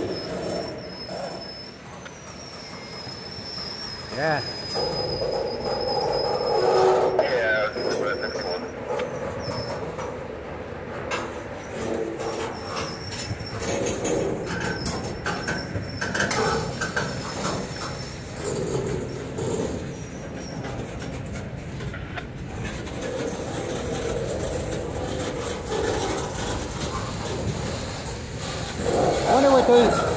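Freight cars of a long train rolling past close by, wheels clicking steadily over the rails, with a thin high-pitched steel wheel squeal through roughly the first ten seconds.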